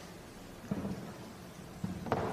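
Room noise with two dull, low thumps about a second apart: things being handled and set down on a witness table with microphones on it.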